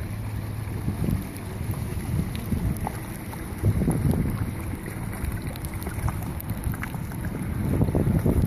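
Wind buffeting the microphone over the low running of outboard motors on rescue inflatable boats, with a steady low hum in the first second.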